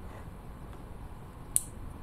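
Quiet handling of a small LED and its wire leads between the fingers, with one brief, sharp click about one and a half seconds in.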